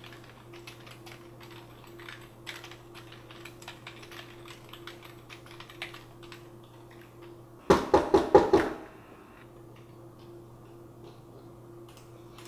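Typing on a white desktop computer keyboard: an irregular patter of key clicks. About eight seconds in comes a quick run of about six much louder knocks, lasting about a second, before the light typing resumes.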